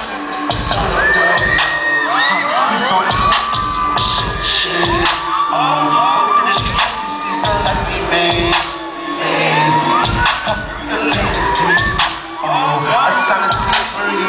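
Live hip-hop track playing over a concert PA with a steady kick-drum beat, while a packed crowd cheers and shouts throughout.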